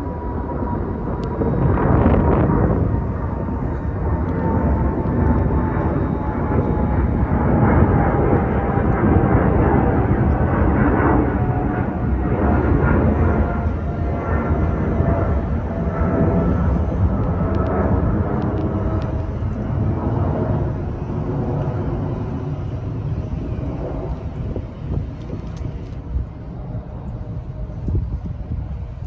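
Twin-engine widebody jet airliner passing low overhead: a steady jet-engine rumble with a thin whine that slowly falls in pitch. It eases off over the last several seconds as the aircraft moves away.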